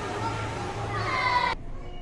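A penguin calling: a loud, meow-like cry that slides down in pitch over a busy background, cut off abruptly about one and a half seconds in.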